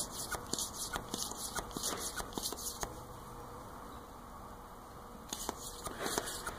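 Faint handling noises at a workbench: irregular light clicks and rustling from a hand working with a shop rag. The sound goes quieter for a couple of seconds past the middle, then the clicks pick up again near the end.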